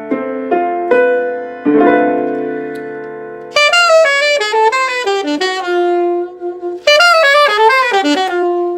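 Piano chords struck several times and left to ring. About three and a half seconds in, an alto saxophone comes in over them with a fast jazz line, breaks off briefly near seven seconds and starts another phrase.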